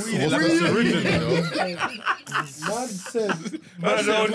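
Men laughing and chuckling amid a few spoken words, with a short hiss a little past halfway through.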